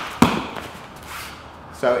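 A knee strike landing once on a Thai pad held against the body, a sharp slap about a quarter second in; the last of a set of three clinch knees.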